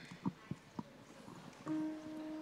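Quiet, sparse instrumental music: a few soft plucked guitar notes, then a held note coming in near the end.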